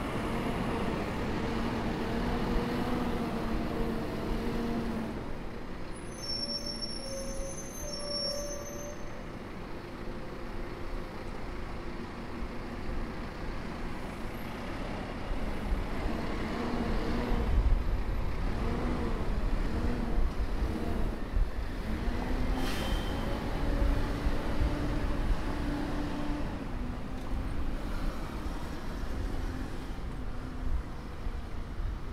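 A diesel city bus running close by amid street traffic, its engine hum steady at first and then rising and falling as vehicles move off, with a brief high hiss a little past the middle.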